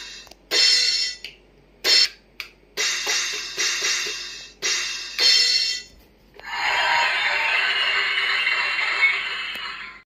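Children's electronic drum kit playing cymbal-like sampled hits through its small speaker as its pads are struck with sticks. There are about seven hits, each ringing and fading, followed by a steady hiss-like sound lasting about three seconds.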